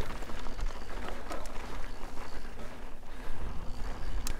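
Mountain bike rolling over sandstone slickrock, with wind rumbling on the camera's microphone and a few light knocks and rattles from the bike.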